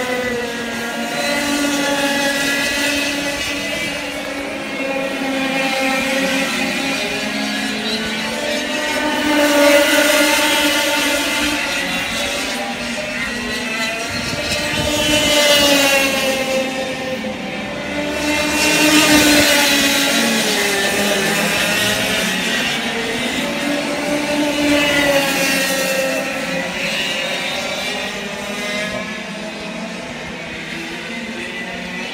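Several 100cc two-stroke racing kart engines lapping the circuit, their notes rising and falling as they accelerate, lift off and pass, often overlapping. The nearest passes are loudest about ten, sixteen and nineteen seconds in.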